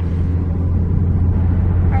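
Cabin noise inside a moving car: a steady low drone of engine and road noise.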